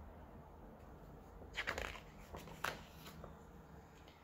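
Faint paper rustling as the pages of a picture book are turned: two brief swishes about a second apart in the middle, then a fainter one.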